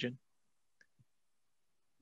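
A voice finishes a spoken word, then near silence with two faint, short clicks about a second in.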